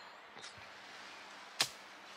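Faint outdoor background hiss, broken once by a single sharp click about one and a half seconds in.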